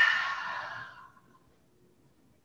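A woman's long, breathy sigh out through the mouth, releasing a full-body stretch, fading away within about a second.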